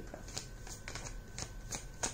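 A deck of large cards being shuffled by hand, cards passed from one hand to the other, giving soft, irregularly spaced flicks and taps.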